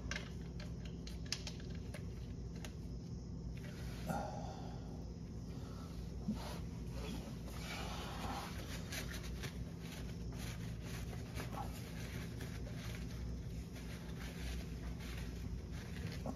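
Quiet handling sounds: a few faint clicks and short rustles as a gloved hand threads a car's oil drain plug in by hand and wipes around it with a paper towel, over a steady low hum.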